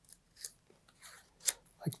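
A strap being pulled through a slot in a chrome plastic camera holder: a few faint, short scraping rustles, the sharpest about one and a half seconds in.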